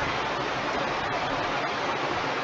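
Steady, even rushing noise inside a car's cabin, with a low rumble underneath that thins out near the start.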